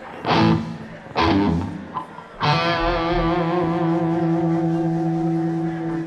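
Electric guitar: two short strummed chords, then a third chord about two and a half seconds in that rings out and is held, its upper notes wavering with vibrato.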